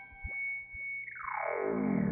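Background music: a held high tone with short falling blips about every third of a second. About a second in, the whole sound slides steadily down in pitch.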